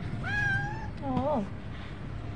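Calico cat meowing: one long, high meow, then a shorter, lower call that wavers in pitch.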